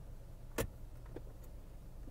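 A single sharp plastic click from the centre-console armrest lid or its tray being handled, then a faint tick, over a steady low hum.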